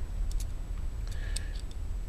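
A few faint, light clicks from a digital caliper being handled and zeroed, over a steady low hum.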